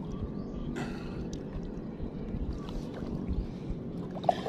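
Shallow seawater sloshing and trickling softly around an arm that is digging into a burrow in the sandy bottom, with a few faint splashes.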